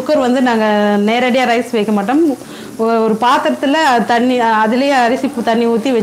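A woman talking, with a pause of about half a second a little over two seconds in.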